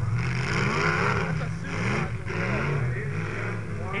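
Demolition-derby car engines revving hard, their pitch climbing and falling again and again over a steady rushing background noise.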